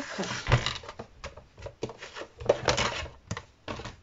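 Clear plastic cutting plates and an embossing folder being handled and laid on the platform of a Big Shot die-cutting machine: a run of light plastic clicks and knocks, with a heavier thump about half a second in.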